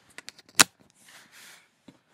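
A quick run of sharp clicks and taps, the loudest just over half a second in, then two soft rustles and one more click near the end.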